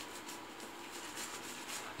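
Faint, quick swishing of a synthetic shaving brush painting soap lather onto a stubbled face.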